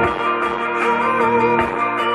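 A rock band playing live, an electric guitar carrying a lead line of held, wavering notes over the band.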